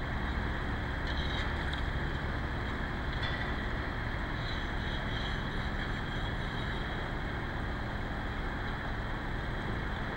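Steady outdoor harbor ambience: an even rushing of wind and water, with a faint low hum under it. A few faint, brief high chirps sound now and then through it.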